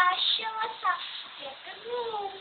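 A young girl singing without clear words, with held notes and short glides in a high child's voice.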